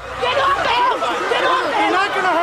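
A crowd of protest marchers, many voices shouting and talking over one another at once.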